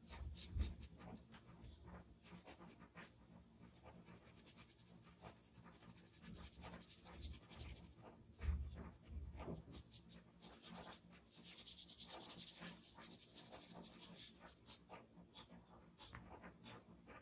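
Cotton swab rubbing charcoal into paper in quick, short strokes, a faint dry scratching, with stretches of denser continuous scrubbing. Two dull thumps, one near the start and one about halfway.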